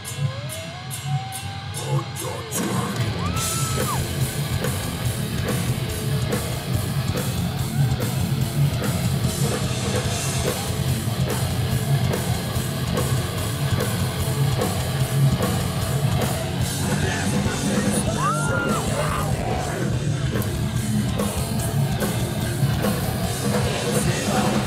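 Live heavy metal band starting a song, with distorted bass and guitars, drums and shouted vocals. The first couple of seconds are sparse, and then the full band comes in loud about two and a half seconds in.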